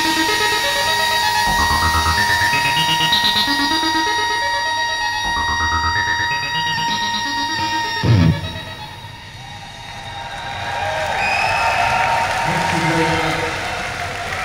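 Electronic rock band playing the last bars of a song live, held synth and guitar notes over drums, ending on a final hit about eight seconds in. The crowd then cheers and whistles, growing louder toward the end.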